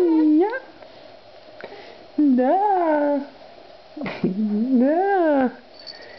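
Infant cooing: three drawn-out vocal sounds, each rising then falling in pitch, the first right at the start and the others about two and four seconds in.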